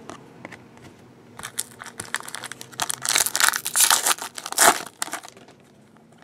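Trading-card pack wrapper crinkling and tearing as hockey cards are handled, loudest about three to five seconds in.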